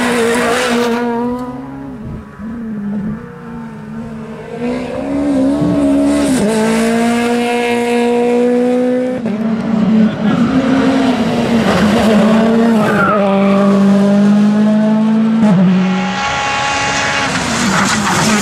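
Rally car engines at full throttle, one car after another, the engine note climbing and dropping with each gear change as they pass at speed.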